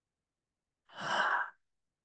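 A woman's single audible breathy sigh, starting about a second in and lasting under a second, after dead silence.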